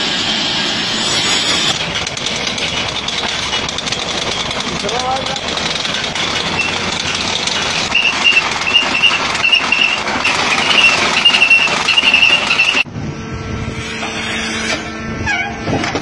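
Heavy machinery noise in short cut-together clips: a sawmill saw running through a log at the start, then a dense grinding machine noise with a wavering high squeal from about halfway. It cuts off suddenly about three-quarters through to a quieter, steadier hum.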